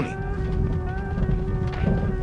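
A single held note from background music, steady in pitch, over the low rumble of a car rolling slowly across a gravel lot.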